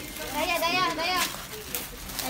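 A child's high-pitched voice with a wavering, sing-song pitch, from about a third of a second in to just past one second.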